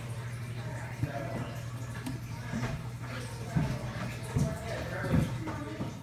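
A few soft knocks as a hand handles the black frame on top of a glass terrarium, over a steady low hum and faint voices in the room.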